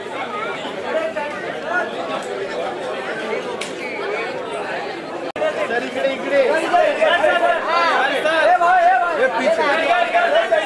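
A crowd of people talking at once: overlapping, indistinct chatter with no single voice standing out. It grows louder after a brief dropout about halfway through.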